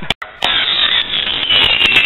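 Roman candle burning with a steady fizzing hiss of sparks, starting about half a second in, with a faint high whistle near the end.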